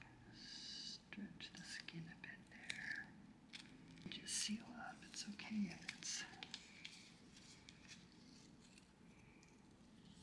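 Faint crinkling and rustling of a transparent adhesive film dressing and its paper frame as gloved hands smooth it down over a port needle, in short scratchy bursts that die away after about six and a half seconds.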